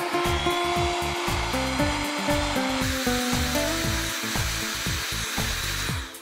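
Heat gun blowing hot air at about 200°C: a steady rushing hiss that turns a little brighter about halfway through, over background music.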